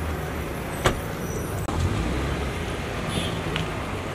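A car door shutting with a single sharp knock about a second in, over the steady low running of an SUV's engine and street traffic.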